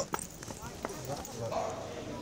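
Quiet street background with a few scattered sharp clicks and faint voices.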